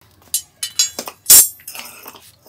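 A string of sharp metal clinks and knocks from a hydraulic bottle jack being handled and set down on a tile floor. The loudest knock comes about a second and a half in.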